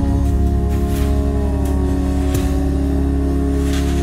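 A cappella vocal group holding a sustained chord between sung lines, with a deep, steady bass note underneath.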